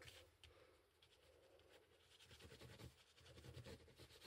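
Faint scratchy rubbing of a Tombow liquid glue applicator tip being scribbled over the back of a card panel, starting about halfway through after near silence.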